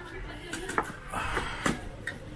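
Low background voices with two light clicks of serving utensils against a plate, about a second apart, as food is dished up.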